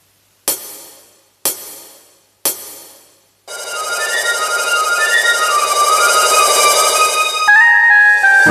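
Karaoke backing track (MR) opening with three sharp count-in clicks one second apart, matching its tempo of 60, then an instrumental intro of sustained chords with a high melody line that swells in about three and a half seconds in.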